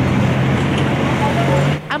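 Street traffic noise from stopped vehicles with their engines idling close by, a steady low engine hum under the general road noise. It cuts off near the end.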